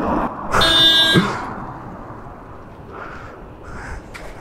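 A vehicle horn sounds once, for just under a second, about half a second in. Then the noise of a passing car fades away.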